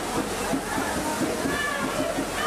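Fireworks set piece burning: a dense, steady hiss of spraying sparks with fast crackling all through.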